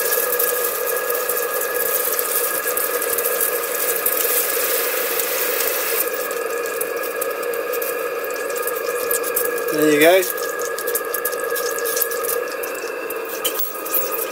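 Maxwell Hemmens Max 11 model steam engine and its boiler running on low steam pressure (about 30 psi): a steady hiss of live steam, with several sustained tones and rapid fine ticking throughout. A brief voice-like sound comes about ten seconds in.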